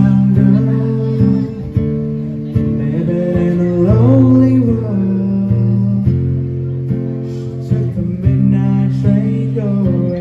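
Acoustic guitar strummed in steady chords while a man sings over it, with a long held note about four seconds in.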